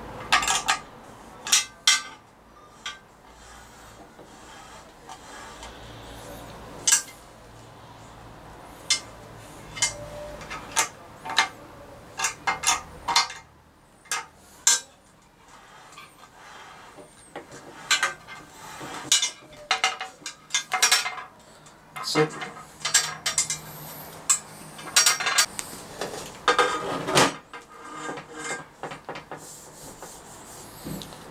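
Black aluminium gantry plate on plastic V-wheels slid back and forth along an aluminium extrusion, giving irregular metallic clicks and knocks. The wheels have just been snugged up on their eccentric nuts, and the plate is being run to check that they turn freely and are not too tight.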